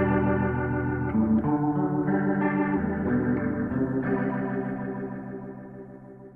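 Rock band recording playing held chords with a few chord changes, the last chord ringing on and fading away from about four seconds in as the song ends.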